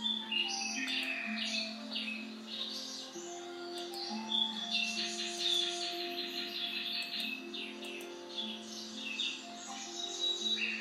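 Soft instrumental background music of long held notes, with bird chirps over it.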